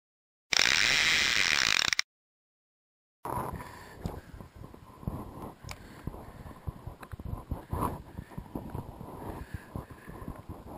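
A loud burst of hissing noise lasting about a second and a half, then a moment of silence. From about three seconds in, a fishing reel being cranked on a retrieve, with irregular clicks and knocks from the reel and the rod being handled.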